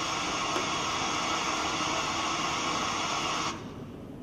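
A steady burst of electronic static hiss that cuts off suddenly about three and a half seconds in.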